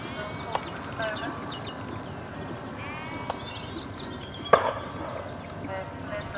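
Small birds singing in short, high chirps throughout, with a few sharp knocks, the loudest about four and a half seconds in.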